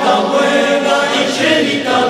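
A choir singing a Basque-language Christmas carol, the voices easing off briefly just before the end.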